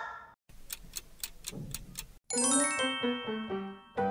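Clock-ticking sound effect, about four sharp ticks a second, then about two seconds in a short chime melody of bell-like notes stepping down in pitch.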